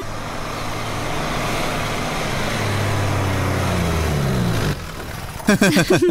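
A car engine running, growing steadily louder as it approaches and cutting off sharply near the end. Excited voices calling "hi" follow.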